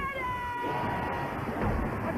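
A woman's voice belting one long, high sung note, held steady for about a second before it fades into a noisy background mix.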